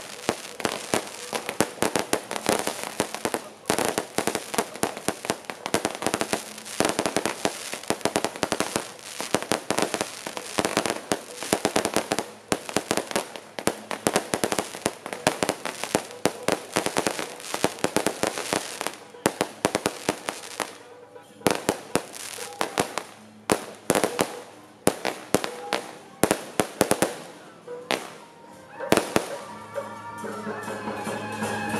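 Firecrackers and fireworks going off: dense, rapid bangs for about twenty seconds, thinning to scattered separate bangs near the end.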